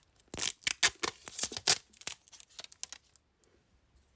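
Close rustling and scratching handling noise right at the microphone: a quick run of irregular scrapes and clicks that stops about three seconds in.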